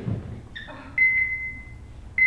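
A hospital heart-monitor beep sound effect: a high, steady electronic tone that starts about half a second in and holds for about a second.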